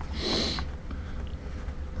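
A person's short breath through the nose, lasting about half a second near the start, over a steady low hum.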